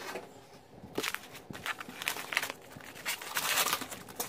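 Padded paper bubble mailer rustling and crinkling as it is handled and opened. Short irregular scrapes begin after a quiet first second and are busiest near the end.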